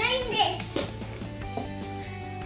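A small child's high voice calling out in the first second, over steady background music.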